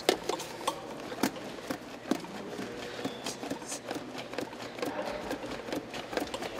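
Chest compressions on a hard plastic CPR training manikin: the manikin's chest clicks and knocks with each push, in a steady rhythm of about two a second.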